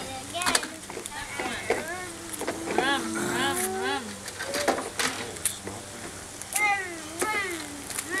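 Voices of children and adults without clear words, including one drawn-out voice sound about three seconds in, with a few short sharp knocks.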